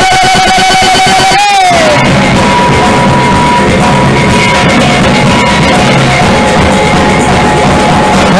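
Acoustic Ramadan patrol-music ensemble playing live: a long wavering sung note ends with a falling slide about a second and a half in, then drums and bamboo percussion carry on with the tune.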